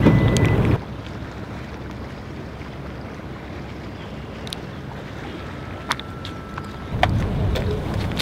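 Wind buffeting the microphone, loud for the first second, then a steady outdoor hiss; a few sharp clicks and a short electronic tone about six seconds in, with the low rumble of wind returning near the end.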